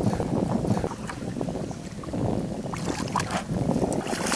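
Wind buffeting the microphone over open water, a rough low rumble, with a few short sharp clicks about three seconds in.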